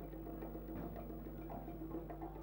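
Faint background music with held steady notes, over a constant low electrical hum.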